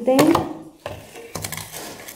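A few sharp knocks and light scraping as a metal basin of sand is lifted and handled against another basin and the stone tabletop.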